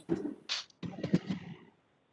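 Faint, choppy fragments of a voice coming through a video-call connection, breaking up and cutting out about a second and a half in.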